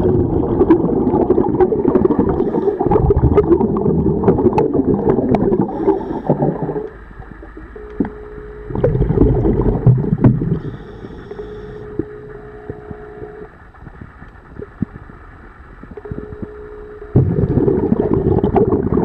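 Scuba diver breathing underwater through a regulator: long loud rushes of exhaled bubbles in the first seven seconds, again briefly around nine to ten seconds and from about seventeen seconds on. In the quieter stretches between, a faint steady tone can be heard, along with scattered sharp clicks.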